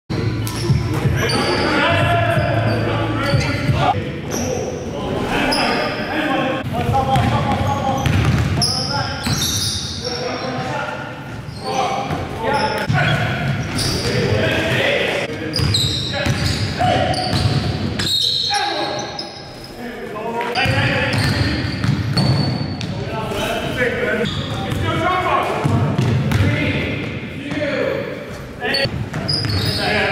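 Basketball bouncing on a gym floor during a game, with players' indistinct shouts and calls, echoing in a large gymnasium.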